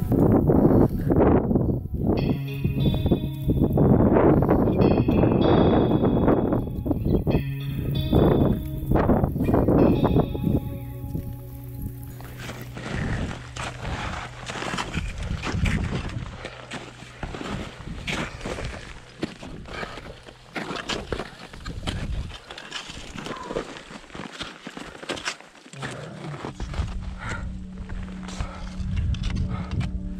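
Background music with sustained low notes. In the second half, the music is quieter and short irregular crunches of crampon steps and ice-axe placements in firm snow are heard under it.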